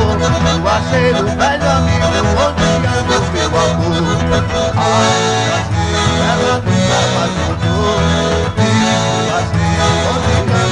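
Instrumental passage of a baião: a piano accordion leads the melody over a steady bass, with an acoustic guitar strumming. The sound gets brighter about halfway through.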